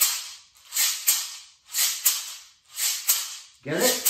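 A maraca snapped in one hand, three strokes about a second apart. Each stroke gives a sharp rattle followed a moment later by a second rattle as the beads fall back, the return beat used for triplet fills.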